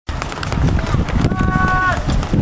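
Open-air football sideline sound: a jumble of quick thuds and knocks over low rumbling, with a person's held shout on one steady note in the second half.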